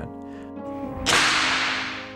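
A book dropped flat onto a wooden stage floor: a single sharp slap about a second in, its ring dying away over about a second in the reverberation of a large empty concert hall.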